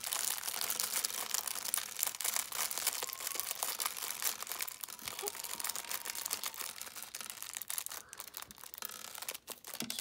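Thin clear plastic bag crinkling and rustling continuously as hands work it and shake small LEGO DOTS tiles out of it.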